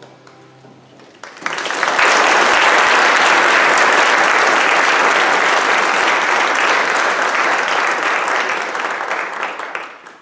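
Audience applauding. The applause breaks out about a second in, as the last notes of the song fade, holds steady and loud, then dies away near the end.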